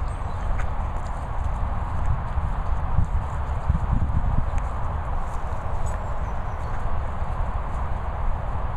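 Wind buffeting a handheld camera's microphone outdoors: a low, uneven rumble that swells and dips, over a steady hiss.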